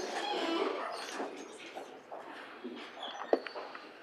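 Indistinct low voices in a large reverberant room, trailing off after about a second and a half into quiet room noise with a few light clicks and one sharp knock about three seconds in.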